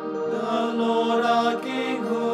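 Chanted singing of the novena refrain begins about a third of a second in, over a sustained keyboard chord.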